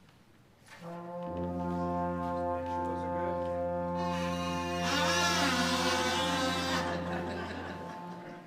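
School band and orchestra holding a sustained brass-led chord over a low bass note. About five seconds in, a wavering, swooping higher line joins for about two seconds, the loudest part, before the chord fades.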